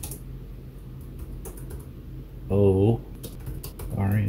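Typing on a computer keyboard: a quick run of key clicks in the second half as a shell command is entered.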